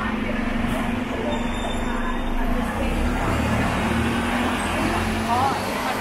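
City bus running at the kerb, a steady low engine hum with a deeper rumble building about halfway through, over general street traffic noise.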